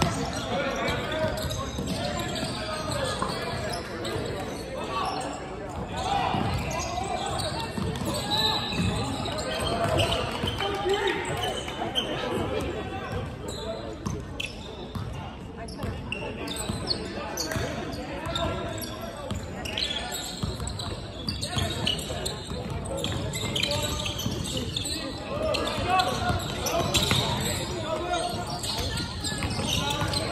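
A basketball bouncing on a hardwood court in a large gym, over indistinct voices of players and people courtside that carry on throughout.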